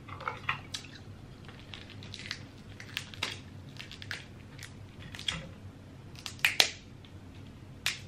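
Cooked crab-leg shells cracking and snapping as they are broken apart by hand: a string of sharp cracks, the loudest pair about six and a half seconds in and another just before the end.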